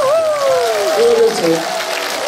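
Audience applauding, with a voice calling out a long falling cry at the start and other voices over the clapping.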